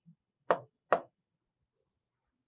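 Two short, sharp taps about half a second apart: a stylus knocking against the glass of an interactive touchscreen board while writing.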